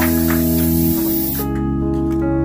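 Aerosol party snow spray hissing over background keyboard music; the hiss cuts off suddenly about one and a half seconds in, leaving the music.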